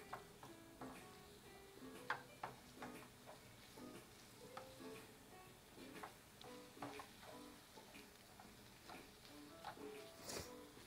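Faint background music of soft, short plucked notes, with scattered light clicks and knocks from a utensil stirring food in a bowl.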